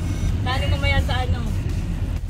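Steady low rumble of a car's engine and road noise heard inside the cabin of a moving minivan, with a woman's voice over it for about a second near the start.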